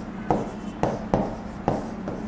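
Marker pen drawing on a whiteboard: four short, sharp strokes in about two seconds.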